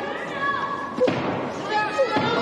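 A single sharp thud about a second in, from the two boxers clinched in the ring, over voices shouting in a large hall.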